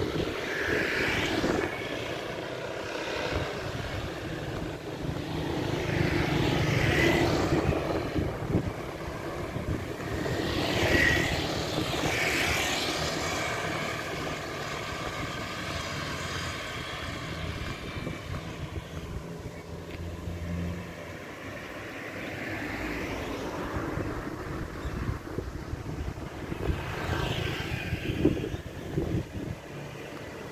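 Motor scooters and other road traffic passing one after another, each engine swelling and fading away over a steady low rumble; the loudest pass-bys come about a quarter and about two fifths of the way in.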